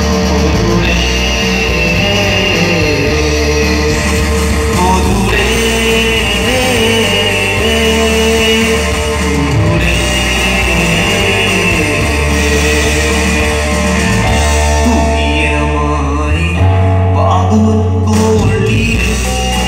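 Live amplified band music: electric guitar and keyboard over sustained low notes that change every couple of seconds, with a male singer's voice.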